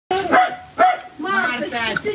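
A dog barking twice in quick succession, about half a second apart, followed by a voice.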